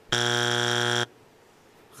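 Game-show wrong-answer buzzer: one steady, harsh buzz lasting about a second, signalling that the answer is not on the board.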